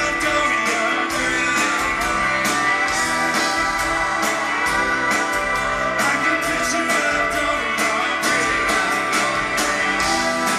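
A live rock band playing several electric and acoustic guitars, a mandolin and keyboards over a steady drum beat.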